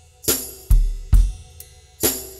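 Instrumental opening of an indie pop song: a drum kit playing a steady beat, bass drum and snare alternating about twice a second with cymbal and hi-hat, over faint held notes.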